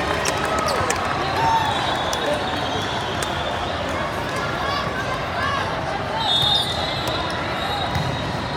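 Echoing hall din of a volleyball tournament: volleyballs bouncing and being struck, over constant indistinct chatter of players and spectators. A high whistle sounds briefly about six seconds in.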